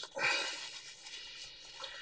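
Paper tissue rubbing and rustling as the tip of a fibre-optic probe is wiped clean, dying away over about a second and a half.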